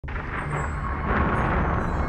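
Intro sound design under an opening title: a loud rushing swell that peaks about a second in, over a steady low rumble, leading into dark cinematic music.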